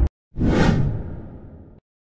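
Whoosh sound effect for an animated logo reveal: a single swish that swells up about a third of a second in and fades away over about a second and a half.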